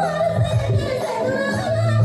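A woman singing a Nagpuri folk song through a microphone, holding a wavering, ornamented note, over a live band with keyboard and a steady low bass.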